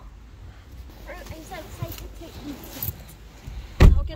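A car door, here a Nissan SUV's, is shut with one loud, low thump near the end. Before it there is a low rumble of handling and movement with faint high voices.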